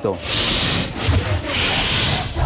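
A large crowd of student protesters marching, their shouting and cheering merging into a loud, noisy roar that swells twice.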